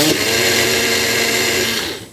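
Personal bullet-style blender running with its cup pressed down on the motor base, blending a green fruit-and-vegetable smoothie: the motor starts suddenly, runs steadily at one pitch, and cuts off just before the end.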